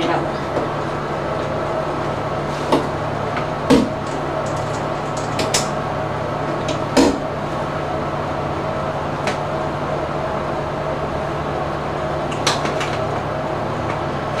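Handling noise: about half a dozen scattered knocks and clicks as a flat iron is plugged into a wall outlet and items are moved about on a bathroom counter, over a steady low hum.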